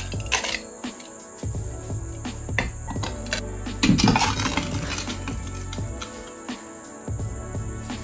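Heavy lengths of solid round steel bar knocking and clinking as they are set on end on a glass bathroom scale on a wooden floor, a scatter of short sharp knocks, with background music.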